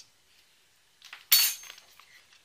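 A thin steel low-profile graphics-card bracket clinks once against the card, a sharp hit with a brief high ring a little over a second in, after a softer touch just before it.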